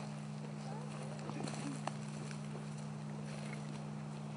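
A steady low hum over an even hiss, with a few faint clicks and snaps between about one and two seconds in.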